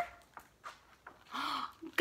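A large picture-book page being turned by hand: soft paper rustle and a few faint clicks, then a short breathy hiss about one and a half seconds in.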